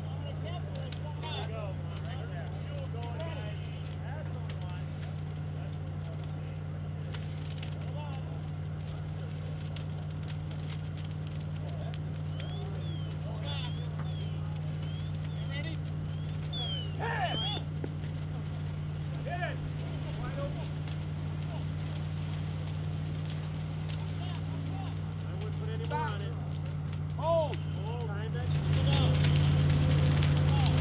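A steady low engine drone, with scattered distant, indistinct voices over it. About a second and a half before the end the sound jumps to a louder, noisier rush.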